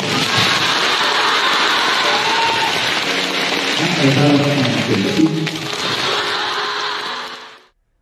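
Applause in a hall, a dense patter of many hands clapping, with a man's voice over a microphone partway through; the clapping fades out near the end.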